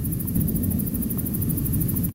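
A low, steady rumble with a few faint ticks.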